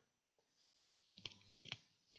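Near silence with two faint short clicks, one about a second and a quarter in and another near the end.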